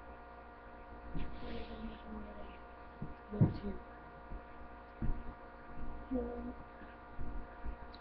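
Steady electrical mains hum, a low buzz with a ladder of evenly spaced tones, with a few soft knocks from handling things on the work surface.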